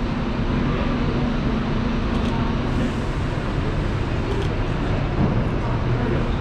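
Steady city street ambience: a constant wash of traffic noise, with a low hum that drops away about halfway through.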